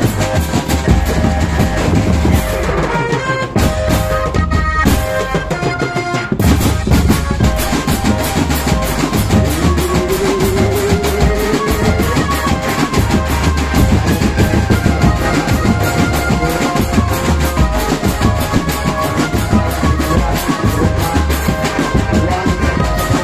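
Village drum band music: bass drums and snare drums beating a steady rhythm under a melodic line. About three seconds in the drums drop out for a few seconds, leaving only held notes, and around ten seconds in a note slides upward.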